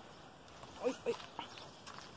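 Footsteps on a loose, sandy dirt path, with a brief call just under a second in.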